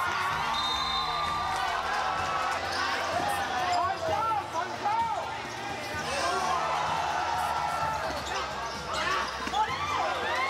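Basketball bouncing on a court amid the chatter and calls of spectators and players.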